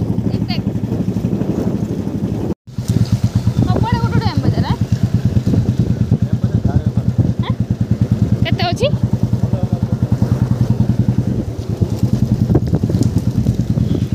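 Motorbike engine running steadily under way, heard up close from the pillion seat, with a fast even pulse. The sound drops out briefly about two and a half seconds in, and short bits of voices come through a few times.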